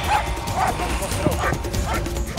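German Shepherd dog barking in a string of short barks, about two a second.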